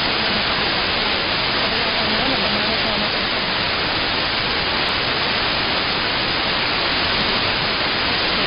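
Shortwave AM radio static through a software-defined radio receiver: a steady hiss with the broadcast voice only faintly audible beneath it, as the station's signal fades.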